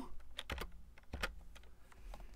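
A few separate computer keyboard keystrokes, finishing the entry of a command in the console with the Enter key.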